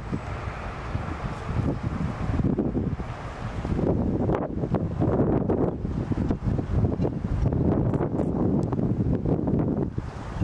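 Wind buffeting the microphone in a low rumble, with the hoofbeats of a four-pony carriage team on arena sand and the carriage running behind them, louder in the second half as the team comes closer.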